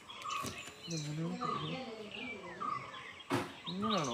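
Birds chirping repeatedly in the background, with faint distant voices, and a single sharp click about three seconds in.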